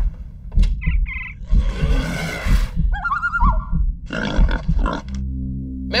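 A run of animal growls and roars with wavering squeal-like cries, over a music bed with low thudding pulses. About five seconds in, the animal sounds give way to a sustained low musical drone.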